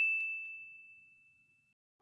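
A single bright, bell-like ding sound effect: one high ringing tone that fades out over about a second and a half.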